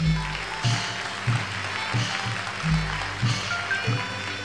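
Burmese traditional theatre ensemble music with a steady beat of deep drum strokes about every two-thirds of a second, under a bright clashing haze of cymbals and a few short high melody notes.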